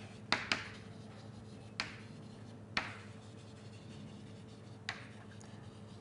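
Chalk knocking on a blackboard during writing: a quick pair of sharp taps shortly after the start, then single taps near two, three and five seconds in. A faint steady hum of room noise runs underneath.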